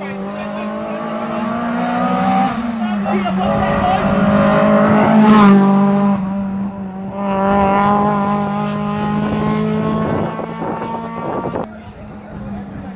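Rally car engine running hard as the car passes, louder and louder to a peak about midway. It dips once, as at a gear change or lift, then picks up again before falling away near the end.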